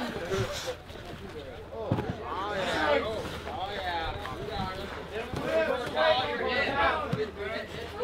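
Indistinct talking and calling out from onlookers, with a few dull thuds in between.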